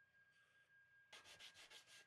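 Faint hand-sanding of a small wooden piece: a quick run of about six back-and-forth rubbing strokes in the second half, over a faint steady high whine.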